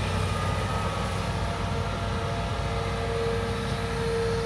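Hitachi Zaxis 350LCH excavator's diesel engine running steadily under load as it lifts and swings a loaded bucket. A steady whine grows louder in the second half.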